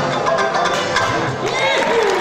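Ukulele-banjo strummed in quick strokes, with a man singing over it.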